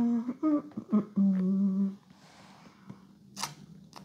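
A person humming a few short notes, ending in a held note, then a quieter stretch with a short click near the end.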